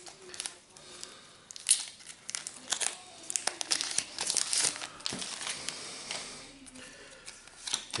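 Topps Match Attax limited-edition card pack wrapper being torn open and crinkled by hand: a run of sharp, irregular crackles and rips.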